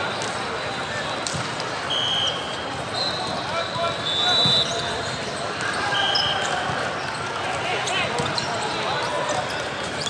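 Busy volleyball tournament hall ambience: many voices chattering across the courts, with balls bouncing and being struck on the hardwood floors. Several short high squeaks cut through now and then. The large hall makes it all echo.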